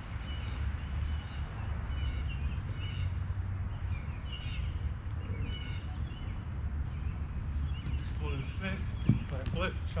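Outdoor background of a steady low rumble with small birds chirping, then a single sharp thud about nine seconds in as a soccer ball is struck on artificial turf.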